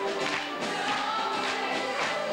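A stage musical number: the cast sings in chorus over music with a steady beat of about two strikes a second.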